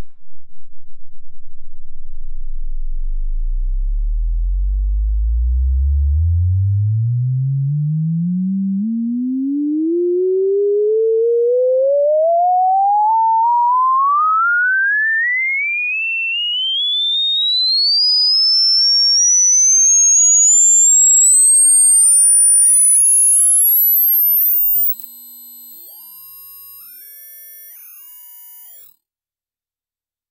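Sine-wave test tone from a tone generator sweeping steadily upward from a few hertz to the top of hearing. It starts as a low flutter, rises through a hum to a high whine, drops sharply in level about 25 seconds in near the top of its range, and cuts off shortly before the end.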